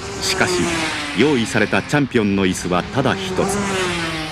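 Two-stroke 500cc Grand Prix racing motorcycle engine running at speed, its steady tone slowly falling in pitch, under a voice talking.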